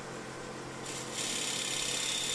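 Wood lathe running with a steady hum while a bowl gouge cuts the edge of a spinning monkeypod bowl blank. The cutting hiss grows louder about a second in, the wood coming off as much fine dust as shavings.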